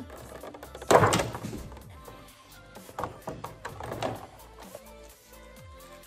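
Adhesive tape being peeled and torn off a figure's clear plastic packaging, with the plastic crinkling: a loud tearing rasp about a second in, then shorter rustles around three and four seconds.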